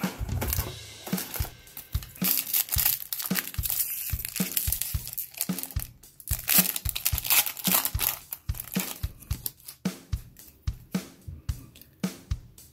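Foil trading-card pack crinkling and tearing as it is pulled open by hand, over background music with a steady beat.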